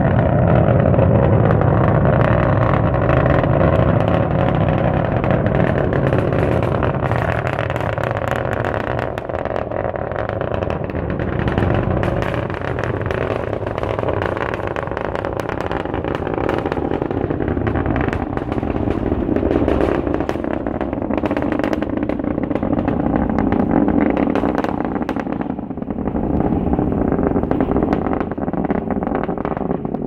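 Falcon 9 rocket's first-stage engines heard from afar during ascent: a loud, continuous rumble with ragged crackling, swelling and easing a little in strength.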